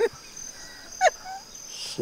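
Insects chirping steadily in the background in a lull between words, with one short falling sound about a second in.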